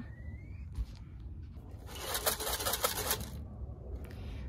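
A tin holding corn shaken for about a second and a half from about halfway in, the kernels rattling against the tin. It is the feed-call signal used to bring the hens back to their run.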